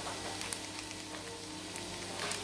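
Plastic ice-cream wrapper crinkling in the hands: a few short crackles about half a second in and again near the end, over a faint steady hum.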